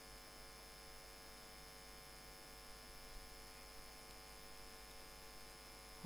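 Near silence: a faint, steady electrical hum from the recording setup, with a thin high whine over it.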